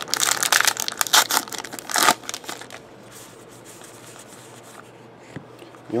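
A trading card pack wrapper torn open and crinkled by hand, a dense crackling rustle for about the first three seconds, then only faint handling.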